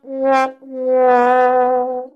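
Sad-trombone comedy sound effect: descending brass 'wah-wah' notes, a short one followed by a long, held final note that sags slightly in pitch.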